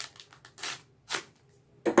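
A few short scratchy rustles of a plastic-wrapped hockey card pack being handled before it is opened.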